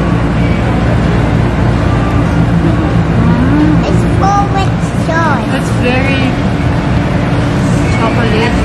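A steady, loud low machine hum, with a few brief high voice sounds around the middle.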